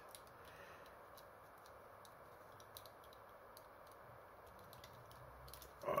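Faint, scattered clicks of a plastic Transformers action figure's parts being handled and flipped during its transformation, over a steady low hiss.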